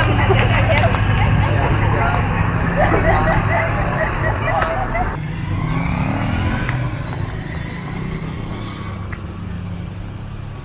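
Street background of several people's voices chattering over a steady low traffic hum. About five seconds in the sound cuts abruptly to a quieter street background.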